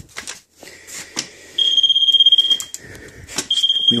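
Moisture meter probe tapping against a wall, then the meter's steady high beep sounding for about a second, and again near the end, signalling a wet reading.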